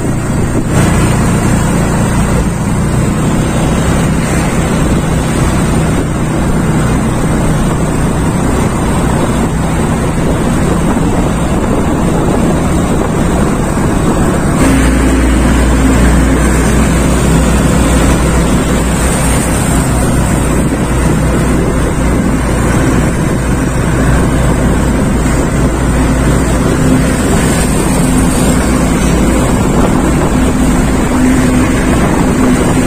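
Motorcycle riding at road speed: a steady engine hum mixed with wind rushing over the microphone. About halfway through, the sound changes abruptly to a deeper, louder hum.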